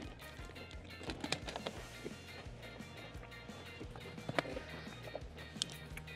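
Quiet background music with a steady low beat. Scattered small clicks and rustles run through it from a metal tin and its wrapped chocolates being handled, the sharpest click about four and a half seconds in.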